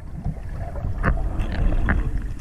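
Muffled underwater noise through a waterproof camera housing: a steady low rumble of water moving past, with two short clicks about one and two seconds in.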